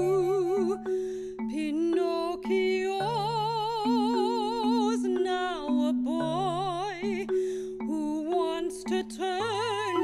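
Chamber music for voice, flute and marimba. A female voice sings wordless notes with a wide vibrato, gliding between pitches, over steady sustained low notes.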